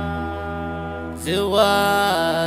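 Sheilah, a Gulf Arabic chanted song: voices hold one long drawn-out note over a low steady drone, then a new sung phrase with sliding pitch comes in a little past halfway.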